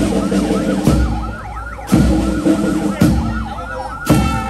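Military brass band playing a march as it parades, with heavy beats about once a second. A high wavering tone rises and falls rapidly over the band throughout.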